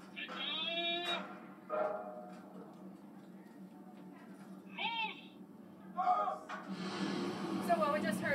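Recorded German naval firing commands shouted by a man's voice over speakers, as short drawn-out calls, over a steady low hum. About six and a half seconds in, a rushing noise swells up.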